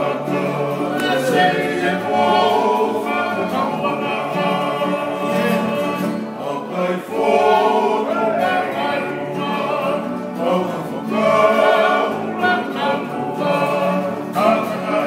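A Tongan kalapu (kava-club) song: several men singing together in harmony over strummed acoustic guitars and an electric bass.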